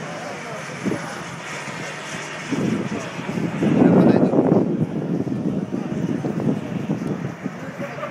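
Two turbine-powered model BAE Hawk jets flying past in formation. The jet noise swells to its loudest about four seconds in, then eases off.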